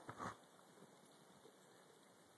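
Near silence, apart from a brief, faint scuffle at the very start: a dog pawing and digging in deep snow.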